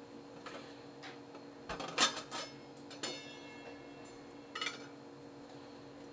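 Cocktail barware being handled on a counter: a few knocks about two seconds in, then one ringing clink about three seconds in, and a softer click a little later.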